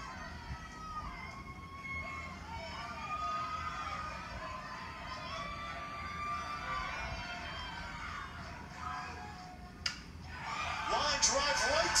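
Ballpark crowd sound heard through a TV broadcast, with long wavering pitched tones. About ten seconds in comes one sharp crack of the bat meeting the ball on a line drive, and the crowd noise swells loudly straight after.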